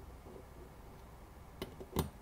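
A hex socket driver on a long extension turning Allen bolts into a steel seat rail: faint handling sounds, then two sharp metallic clicks near the end, the second the louder.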